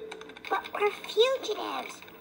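Computer keyboard typing, with indistinct voices over it that are louder than the keys.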